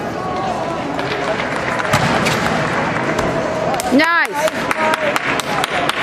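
A gymnast's vault: running footsteps on the runway, the bang of the springboard and the hands striking the vault table, and the landing thud on the mat. Over steady arena crowd chatter, with a loud cheering whoop about four seconds in.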